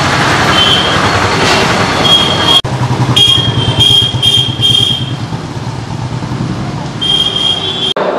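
Loud outdoor din of a crowd and street traffic with a steady low hum underneath. Short high-pitched toots repeat several times from about two seconds in, with a brief dropout between them.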